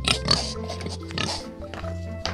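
Pig oinks and grunts added as a sound effect over light background music. A book page rustles as it is turned near the end.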